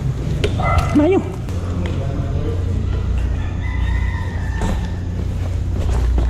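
Steady low rumble of a BMX bike rolling, with wind and handling noise on the bike-mounted camera and scattered clicks. A short, wavering pitched call rises and falls about a second in, and a fainter drawn-out call comes near four seconds.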